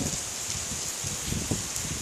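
Steady rain falling, a continuous hiss, with a few soft low rumbles in the middle.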